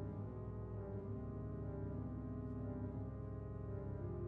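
Pipe organ playing sustained full chords over a deep held pedal note. The chord changes about a second in and again midway.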